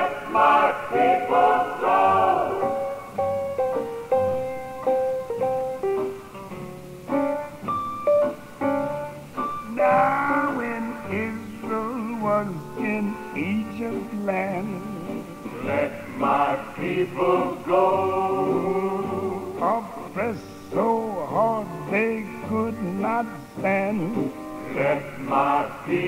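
A song with a male voice singing over instrumental accompaniment, played from cassette tape with a dull, muffled sound.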